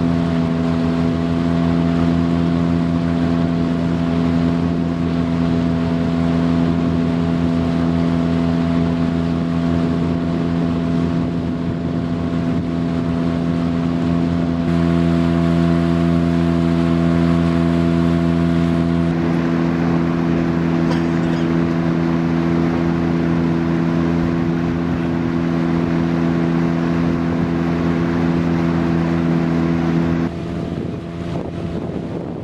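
Outboard motor of a small wooden fishing boat running steadily at cruising speed, heard from aboard. Its tone shifts slightly about halfway through.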